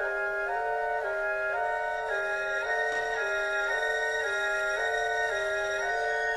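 Woodwind music led by flutes, playing chords that alternate back and forth about twice a second in a steady repeating figure.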